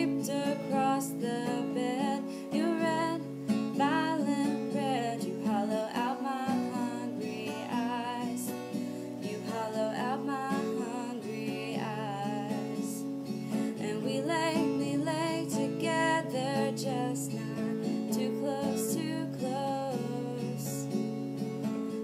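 Acoustic guitar strummed through an instrumental break of the song, with chords changing about once a second.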